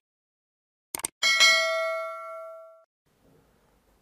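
Two quick mouse-click sound effects about a second in, then a single bell ding that rings out and fades over about a second and a half: the stock sound effect of a YouTube subscribe-button and notification-bell animation.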